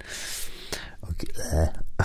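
A man's breathy, half-whispered murmuring under his breath, with a short low voiced sound about one and a half seconds in.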